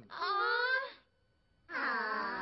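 An animated cartoon character's voice wailing: two drawn-out, wavering cries with a short silent gap between them.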